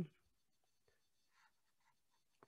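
Near silence, with a few faint soft scratches of a stylus on a drawing tablet.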